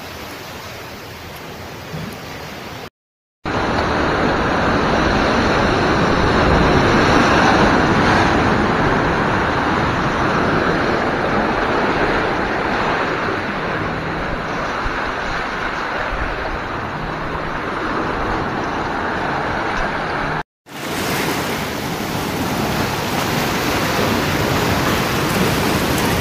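Ocean surf washing over rocks and stones, a steady rushing noise that breaks off twice for a moment at edit cuts and is loudest through the long middle stretch.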